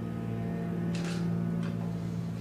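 A steady low hum, with a brief hiss about a second in and a shorter one near the end.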